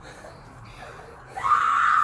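A person crying out in distress: after a quieter stretch, a loud, drawn-out scream starts about one and a half seconds in and carries on past the end.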